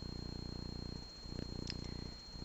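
A cat purring: a steady low buzz broken by a brief dip about once a second as it breathes in and out. A faint steady high-pitched whine runs underneath.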